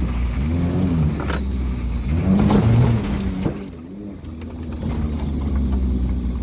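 Mitsubishi Eclipse engine being driven, heard from inside the cabin: the revs rise and fall a few times, easing off and going quieter about four seconds in before picking up again.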